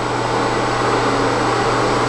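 A small motor running with a loud, steady mechanical whir.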